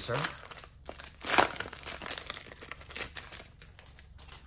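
Foil wrapper of a Donruss baseball card pack being torn open and crinkled by hand, a dense run of crackles with the loudest rip about a second and a half in.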